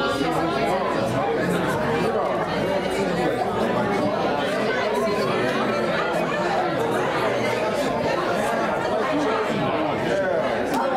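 Congregation chatter: many people talking and greeting one another at once, overlapping conversations with no single voice standing out, steady throughout.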